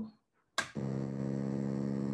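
Homemade oscillator synthesizer switching on with a click about half a second in, then a steady electronic drone rich in overtones, with two of its oscillators sounding together.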